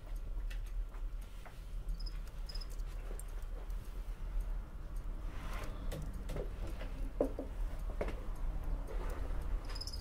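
Coffee-shop room ambience: a steady low hum with scattered small clicks and ticks, a few brief high clinks, and a run of soft taps in the second half.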